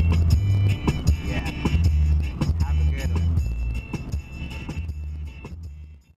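A song playing on a car stereo, with a heavy bass beat and regular drum hits, fading out over the last two seconds.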